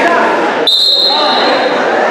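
Referee's whistle blown once, a single steady high blast of about a second starting about two-thirds of a second in, stopping the wrestling action, over crowd voices in a large echoing gym.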